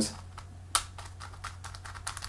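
Plastic MoYu Cong's Design MeiYu 4x4 speedcube being turned by hand, its inner layers giving a string of light plastic clicks, one louder about three-quarters of a second in. The layers are catching and hitting bumps every turn instead of sliding smoothly, which the owner puts down to internal center pieces under the new caps being too thick.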